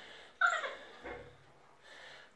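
A Bernese mountain dog puppy gives one short, high bark about half a second in, its pitch falling away quickly.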